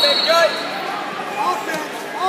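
Wrestling shoes squeaking on the mat in short chirps as the wrestlers shuffle and tie up, over the background chatter of a gym.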